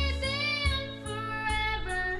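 A young boy singing into a corded microphone, holding long, slightly wavering notes over backing music with sustained low bass notes.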